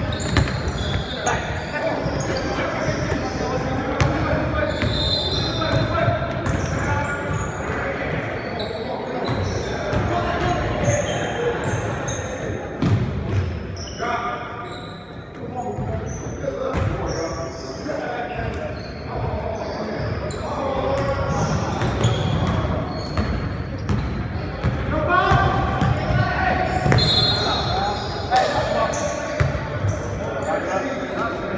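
A basketball bouncing on a hardwood gym floor during play, with short high squeaks of sneakers and players' shouts, all echoing in a large gym.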